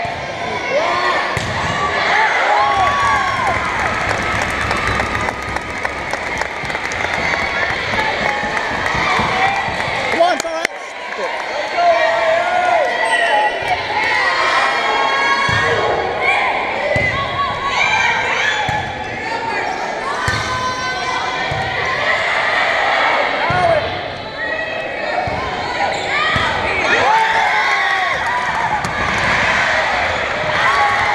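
Volleyball rally on a gym floor: the ball thumping off players' hands and arms, with sneakers squeaking on the hardwood. Spectators and players talk and shout throughout.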